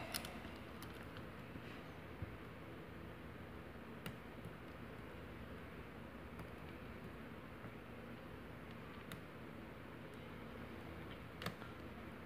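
Faint, sparse clicks of a lock pick and tension wrench working inside a brass lock's keyway, over a low steady room hum; the lock stays shut.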